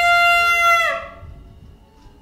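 A straight brass herald's horn blown in one long, loud high note of about a second, the pitch sagging down as the note ends.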